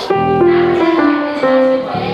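Grand piano played by a child: a chord with low notes struck at the start, then a few single notes, each ringing on before fading out near the end.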